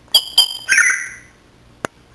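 African grey parrot calling: two short, high whistled chirps in quick succession, then a longer call that fades out. A single sharp click follows near the end.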